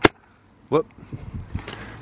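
A garden shovel scooping and tossing peat moss: one sharp click right at the start, then a brief exclaimed "whoop" and faint soft scuffing as the peat moss is spread around the base of the plant.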